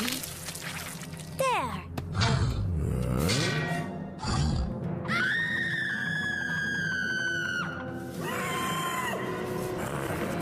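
Cartoon T-rex giving one long, high scream of pain, held for about three seconds from about five seconds in, as a splinter is pulled from its mouth. Music plays throughout, with falling whistle-like sound effects and a few thuds before the scream.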